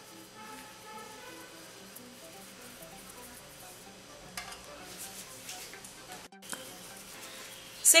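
Soft background music, a simple run of short notes, over faint handling sounds as balls of dough are rolled and set down on an aluminium baking tray. The sound drops out for an instant a little past six seconds.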